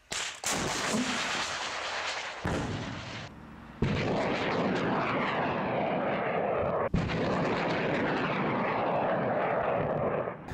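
Heavy weapons fire and explosions, in several cut-together clips. Sharp blasts come at the start, about four seconds in and about seven seconds in, each followed by a few seconds of dense, sustained noise.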